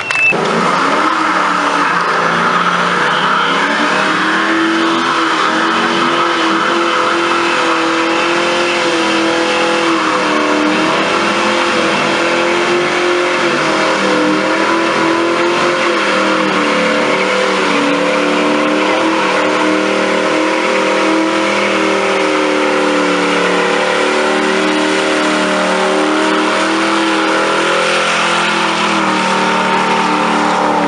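Muscle car engine held at high revs during a burnout, the revs climbing in the first second and then held high and steady with small wavers, over the hiss of the spinning rear tyres.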